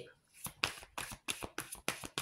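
A deck of oracle cards being shuffled by hand: a quick run of soft card slaps, about five or six a second, starting about half a second in.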